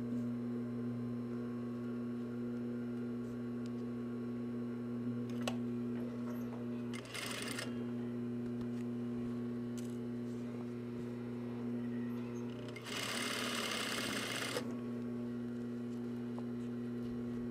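Single-needle lockstitch industrial sewing machine with its motor humming steadily, running in two bursts as it stitches a zipper tape onto a sweatshirt: a short burst about seven seconds in and a longer run of about two seconds near the end.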